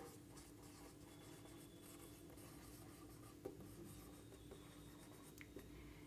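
Faint strokes of a marker pen writing on a whiteboard, with a couple of small ticks as the tip lifts and touches down.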